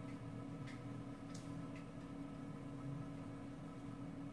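Low steady hum of room noise with a few soft ticks during the first two seconds.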